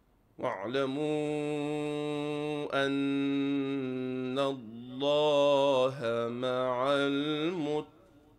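A man reciting the Quran in melodic tajweed style in two long drawn-out phrases with a short pause between them. The second phrase wavers up and down in ornamented runs.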